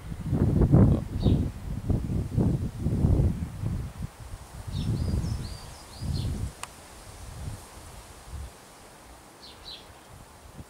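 Wind gusting against the microphone in loud, irregular low buffets that die down after about six seconds. A small bird chirps in short high phrases three times.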